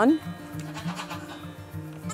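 Background music with a steady low drone. About a second in, Nigerian Dwarf goat kids give a faint bleat.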